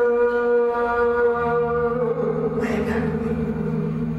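A man singing long held notes into a microphone, the pitch steady at first and then wavering with vibrato about halfway through, while a low steady note sounds beneath him from about a third of the way in.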